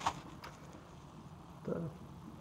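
A sharp click right at the start and a fainter one about half a second later, over faint steady background noise, then a single spoken word near the end.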